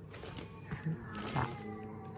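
A domestic cat giving a short, low meow, with a brief rustle of newspaper partway through.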